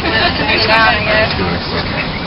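Low, steady running rumble of a streetcar in motion, heard from inside the crowded car, with voices talking over it.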